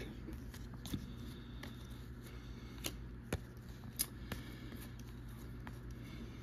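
Baseball trading cards being handled and flipped off a stack one at a time: faint, irregular flicks and clicks of card stock, over a steady low room hum.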